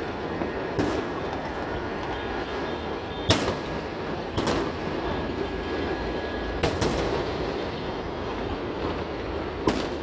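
Fireworks exploding across the city: a steady rumble of many far-off bursts, broken by sharp bangs about a second in, a loud one a little past three seconds, another around four and a half, a close pair near seven and one near the end.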